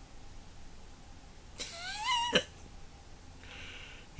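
A cat meowing once: a single rising call of under a second, about halfway through, that cuts off abruptly.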